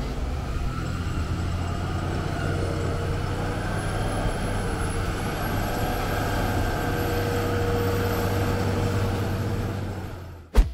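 Fendt Katana 65 self-propelled forage harvester at work: a steady deep engine drone with a faint high whine that slowly rises in pitch.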